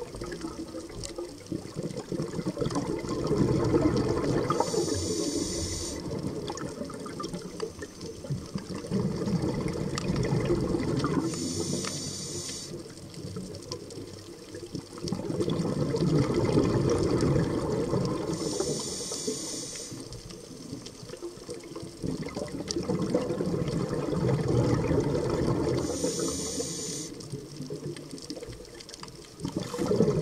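Scuba diver breathing through a regulator underwater: a short, sharp hiss on each inhale and a burst of rumbling exhaust bubbles on each exhale, four slow, even breaths about seven seconds apart.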